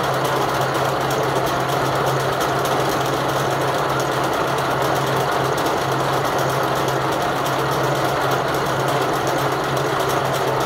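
Steeger USA vertical harness braiding machine running at speed, its bobbin carriers circling the deck as it braids a protective jacket over a wire harness. A steady, fast mechanical rattle over a constant low hum.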